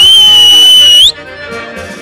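Accordion folk dance music, cut across by a loud, piercing whistle lasting about a second that slides up into a steady high note and flicks up again as it stops. After the whistle the music goes on at a lower level.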